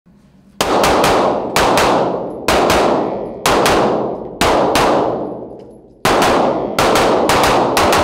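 CZ Tactical Sport 2 Orange 9mm pistol firing at an indoor range, each shot ringing on in the room's echo. Double taps come about a second apart, then a quicker string of about five shots begins about six seconds in.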